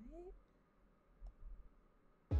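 Near silence with a brief rising tone at the start, then a few faint clicks about a second and a quarter in from a laptop's keys or trackpad being worked.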